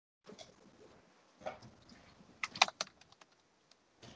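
Computer keyboard typing heard over a video call, with scattered key clicks and a quick run of louder clicks about two and a half seconds in.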